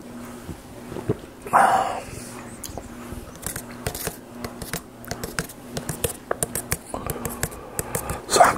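A sip from a paper takeaway cup with one short, loud breathy mouth sound about a second and a half in, then a run of small, quick clicks and taps as fingers handle the cup and its plastic lid close to the microphone.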